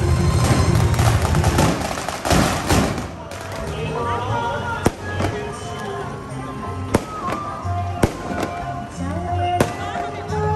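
Firecrackers going off: a dense string of rapid crackling bangs for the first few seconds, then single sharp bangs about once a second or two, four of them. Music and voices run underneath.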